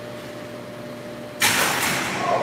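A steady hum with a faint steady tone, then a sudden loud hiss about one and a half seconds in.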